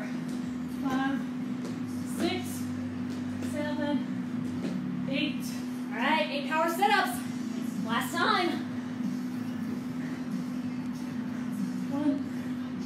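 Short bursts of a woman's voice with no clear words, over a steady low hum; the loudest bursts come about six and eight seconds in.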